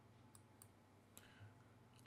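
Near silence: faint room tone with three faint, short computer-mouse clicks.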